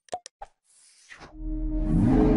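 Sound effects of an animated like-and-subscribe button: three short clicky pops in the first half second, a falling swish, then a louder sustained sound with steady hum-like tones from about a second and a half in.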